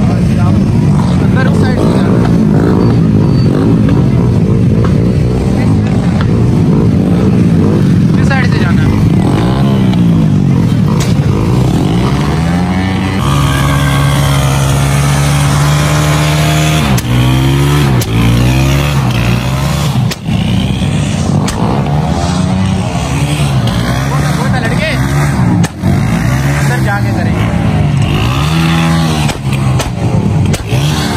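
Small motorcycle engines running and being revved, the pitch rising and falling again and again, with a steadier held rev around the middle.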